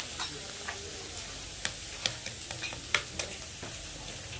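Meat sizzling on a domed tabletop barbecue grill-pan (mookata), a steady frying hiss, with several sharp clicks and taps of utensils against the pan and dishes, the loudest about three seconds in.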